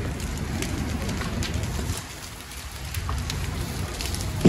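A fully involved RV fire burning: a steady low rumble with scattered crackles and pops, easing off for about a second halfway through.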